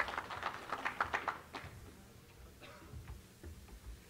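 Scattered audience applause, a short round of handclaps that thins out after about a second and a half, leaving a few stray claps.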